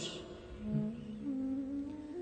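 Soft, steady low hum of sustained tones, a drone held under the talk, shifting pitch slightly near the end.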